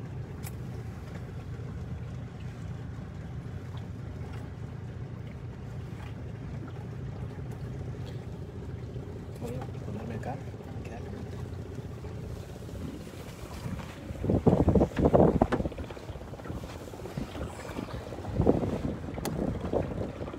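Boat motor running steadily with a low hum as the boat travels on the river, with two loud, irregular rumbling surges late on.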